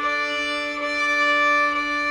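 A fiddle bowing one long, steady D note over a sustained D drone from a play-along track, the player matching the note to the drone to play it in tune.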